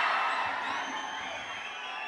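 A large indoor crowd cheering, the noise dying away over the two seconds.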